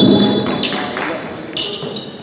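Basketball play on an indoor hardwood court: a few sharp thuds and short high squeaks, echoing in the large gym, over people's voices.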